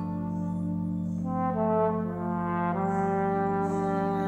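Slow music with held chords. The upper notes step to new pitches just over a second in and again near the three-second mark.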